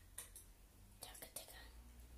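Near silence: a few faint whispered sounds over a low steady hum.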